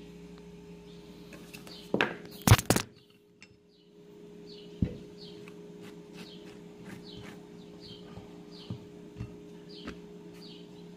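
A few loud knocks and clatter about two seconds in, then a bird chirping repeatedly, short high falling chirps about twice a second, over a steady hum.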